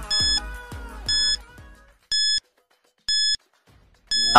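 Quiz countdown timer sound effect: four short, high electronic beeps, one each second, ticking down the seconds. Background music fades out under the first two beeps.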